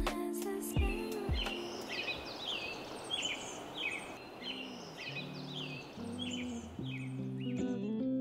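A bird calling over and over, about two short falling calls a second, over a steady rushing background. Music fades out at the start and a plucked bass and guitar line comes in about halfway through.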